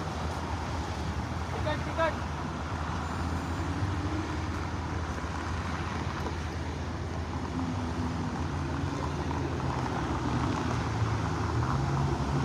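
Urban outdoor ambience: a steady hum of road traffic with faint background voices and a short chirp about two seconds in.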